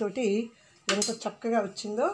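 A woman speaking in short phrases, with a steel knife clicking against a ceramic plate as it cuts into a caramel pudding.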